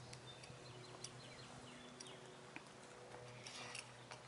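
Near silence: faint outdoor background with a low steady hum, a few soft scattered ticks and some faint short chirps near the end.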